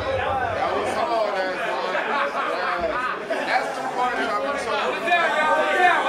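Indistinct chatter: several men talking over one another in a crowded room.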